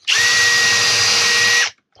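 Cordless drill spinning a small 1/8-inch hole cutter through the fabric of a canvas bag: a steady, even whine for about a second and a half that stops suddenly once it is all the way through.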